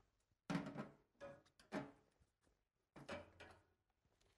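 Faint handling noises: a few short knocks and rustles, the loudest about half a second in, as tools and insulating covers are handled at a switchboard.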